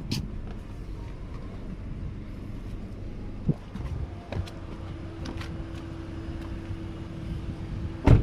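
A steady low background hum with a few light clicks and knocks in the middle, and a faint steady tone coming in about halfway through.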